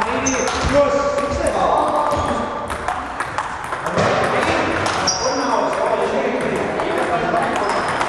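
Table tennis rally: the celluloid ball clicking off bats and the table again and again at an irregular pace, with voices talking in the hall.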